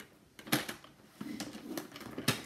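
Paper trimmer's scoring blade being run along its track to score lines into cardstock. A sharp click comes about half a second in, followed by softer ticks and a light scrape of the carriage.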